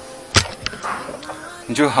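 A single short, sharp click about a third of a second in, followed by a man's voice starting to speak near the end.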